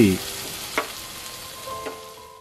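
Onion-tomato masala with chilli powder sizzling in a kadai as it is stirred with a wooden spatula, the sizzle slowly fading.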